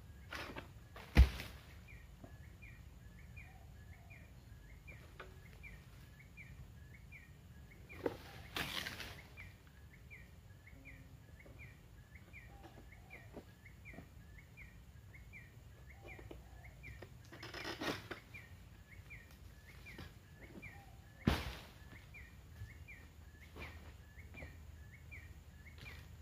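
Oil palm harvesting with a long-pole sickle (egrek): a sharp, heavy thud about a second in and another about three-quarters of the way through, with two longer rustling crashes between them, as cut fronds and the fruit bunch come down. A small bird or insect chirps steadily about twice a second throughout.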